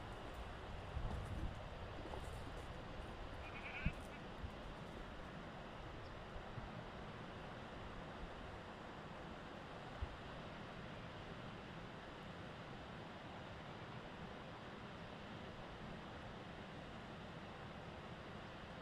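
Faint, steady outdoor background noise, broken by a couple of light clicks and one brief high call about four seconds in.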